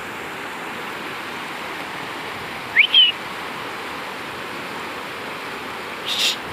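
Steady rush of a fast, muddy river running through boulder rapids. About three seconds in, two quick high whistle notes cut through, the first rising sharply.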